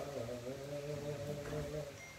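A man's voice holding a low, steady note in marsiya chant, fading out near the end.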